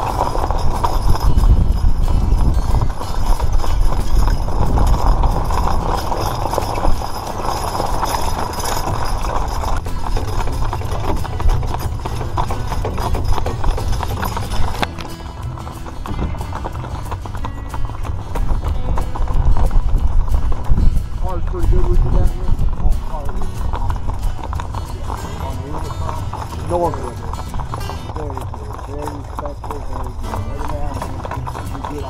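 Hooves of a two-mule team clip-clopping on the lane as they pull a wagon, over a steady low rumble.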